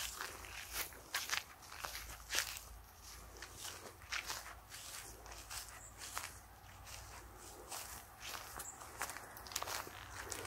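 Faint, irregular scratchy crunching on rough, freshly worked garden ground, about one or two strokes a second, over a low steady rumble.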